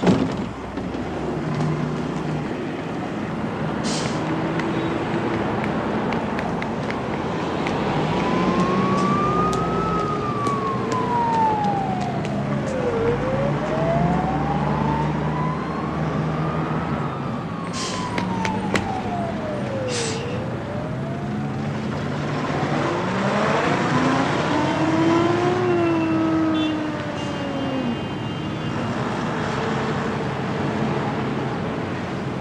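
Busy city traffic with engines running, and a wailing siren that rises and falls slowly twice through the middle.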